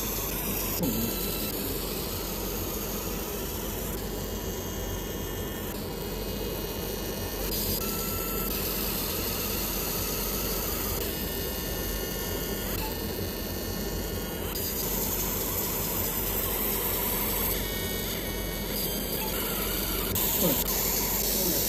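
Laser marking machine engraving labels onto a metal cover: a steady hiss with high whining tones that start and stop in spells of a second or two as each label is marked.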